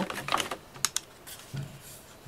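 Light plastic clicks and taps as a pair of Bluetooth headphones is handled and turned over in the fingers. There are several short, sharp clicks at uneven intervals.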